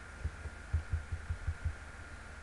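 Faint irregular low thumps, several a second, over a steady faint high-pitched whine and hiss: background noise on the narration microphone.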